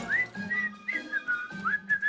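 A person whistling a casual little tune: a string of short notes that slide up and down between them.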